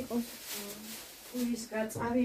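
Speech only: a voice talking softly in short phrases, with one drawn-out held vowel about half a second in.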